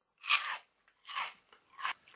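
Chewing a mouthful of Lay's Poppables, airy puffed potato crisps: three crisp crunches, the first the loudest.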